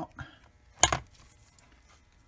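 A single sharp metallic clink with a brief ring, a little under a second in: a steel transmission gear or part knocking against metal as the gear cluster is handled.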